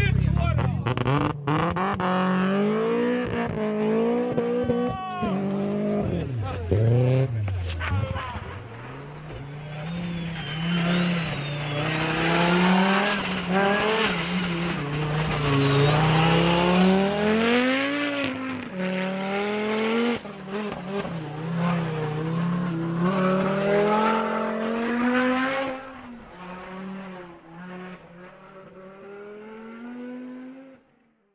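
Rally car engine revving hard, its pitch rising and falling over and over, with tyres spinning and skidding on snow. The sound drops away near the end.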